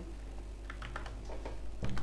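A quick run of computer keyboard key clicks, roughly ten light presses in about a second, over a low steady electrical hum.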